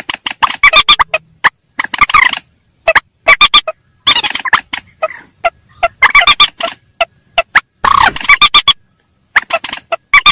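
Lure-call recording of mandar rails, adults and young: loud clusters of rapid, sharp, repeated calls in bursts of a second or so, separated by short pauses.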